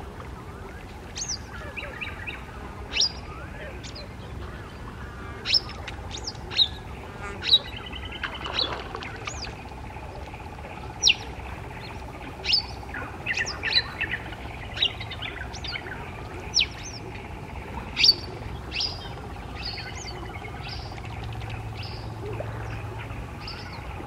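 Birds chirping: short, sharp, falling calls, roughly one a second at irregular intervals, over a steady low hum.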